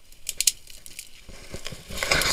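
Dry gorse and dead grass crackling and rustling as someone pushes through the undergrowth: a run of snapping clicks, the loudest about half a second in.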